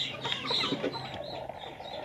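Chickens clucking: a few short calls close together in the first second, then fainter ones.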